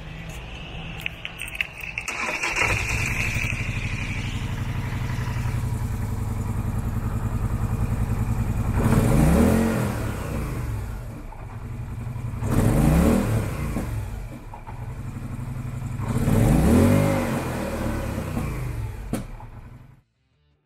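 2017 Polaris Sportsman 850 SP's 850cc fuel-injected twin-cylinder engine running at idle, with a high whine in the first few seconds. It is revved three times on the throttle, each rev rising and falling back in pitch.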